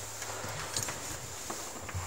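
A few faint, irregular light clicks and taps over a low steady hum.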